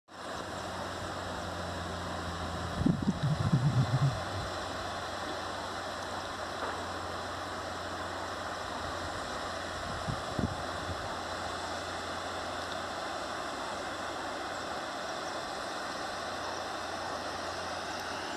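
Steady rushing of a distant small waterfall over rocks, with a faint low hum beneath it. A brief louder low sound breaks in about three to four seconds in, and a short one about ten seconds in.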